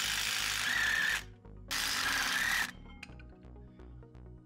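A power tool on an E14 Torx socket runs in two bursts, one of about two seconds and then a shorter one, unscrewing the two rear brake caliper hanger bolts. Each burst ends in a brief whine.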